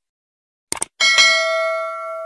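Subscribe-button sound effect: a quick double mouse click about three quarters of a second in, then a bell struck and ringing out, fading over about a second and a half.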